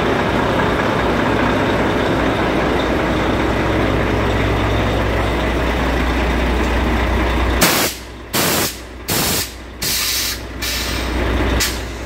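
Compressed air hissing out of a Volvo FH truck's air suspension valves as the suspension is let down. A steady hiss lasts about seven and a half seconds, then breaks into a string of short hisses about half a second apart. A low hum runs underneath.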